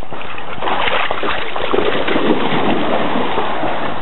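Steady rush of river water flowing fast, a dense even hiss with no breaks.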